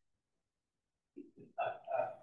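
Silence for about the first second, then short bursts of a person's voice that build toward speech near the end.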